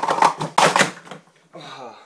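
Plastic sport-stacking cups clattering rapidly against each other and onto the mat as a pyramid is swept down into stacks, a fast run of sharp clicks that stops about a second in.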